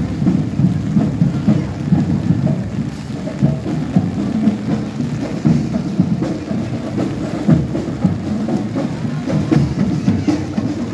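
Heavy rain falling on a street, with a marching band's drumming and music mixed in underneath.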